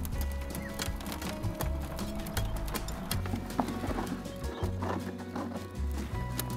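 Background music with a steady bass line, over repeated scraping and clicking of a hoe dragging soil across a wire-mesh sieve.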